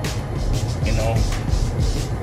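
Steady low rumble of road and engine noise inside the cabin of a moving Mercedes-AMG E53.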